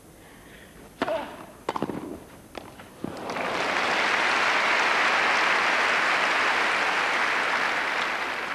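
Tennis ball struck by racquets in a quick rally of about four sharp hits between one and three seconds in, serve, return and volleys, then crowd applause that swells and holds as the point is won, fading near the end.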